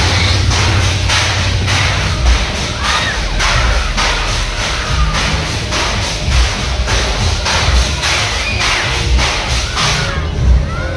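Loud fairground ride music with a heavy thumping bass beat, about two beats a second, playing from a spinning arm ride. A few riders' shouts rise over it.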